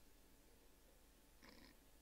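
Near silence, with only a faint steady low hum of room tone.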